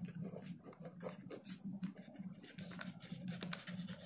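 Pen writing on notebook paper: a run of short, scratchy strokes as words are written in ink, over a steady low hum.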